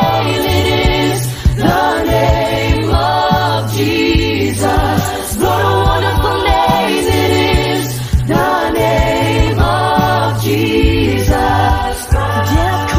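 A religious song: voices singing phrases over steady bass notes and a regular beat.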